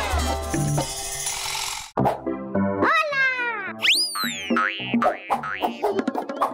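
Children's TV jingle music. One busy musical sting cuts off suddenly about two seconds in, then a bouncy theme starts with plucked notes and cartoon boing effects that sweep up and down in pitch.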